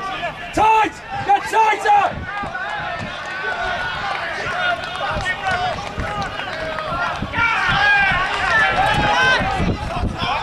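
Several voices shouting and calling across a football pitch during open play, overlapping one another, with a few loud calls in the first two seconds.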